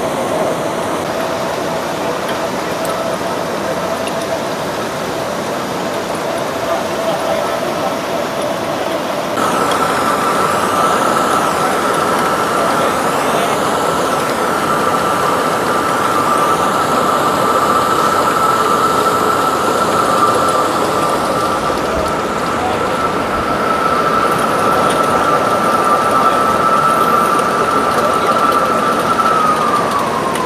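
The lift-hill drive of a Mack water coaster running with a steady whine. About nine seconds in the whine jumps higher in pitch, holds there, then falls away near the end as the drive slows.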